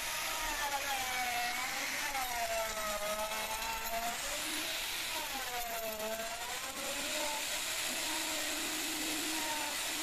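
Electric plunge router running and cutting along the edge of a teak board, its motor whine dipping in pitch several times as the bit bites into the wood and climbing back between cuts.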